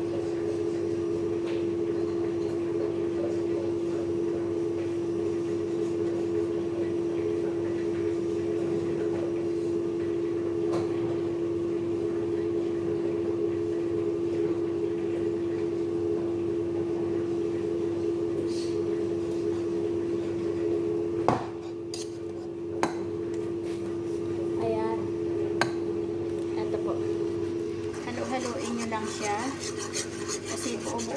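A steady electric hum from a kitchen appliance motor, with a few sharp clinks of pots and utensils after about 20 seconds. Near the end, a spoon scrapes round a pan, stirring a white sauce to work out the lumps.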